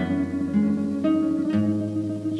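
Guitar playing a few strummed chords, with a new chord struck at the start, about a second in, and again about half a second later.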